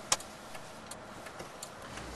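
Low, steady car-cabin hum and hiss, with one sharp click just after the start and a few faint ticks later.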